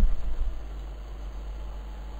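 Steady low hum with a faint even hiss, the background noise of the recording.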